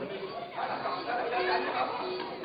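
Men's voices speaking in a large hall, with a steady held note coming in about one and a half seconds in.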